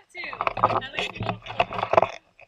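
Women's voices and laughter close to the microphone, choppy and mixed with irregular clicks and rustling.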